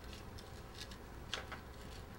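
A few faint, light clicks of a bicycle front-wheel quick-release skewer being handled as its cam lever is closed, the sharpest just past the middle, over quiet room tone.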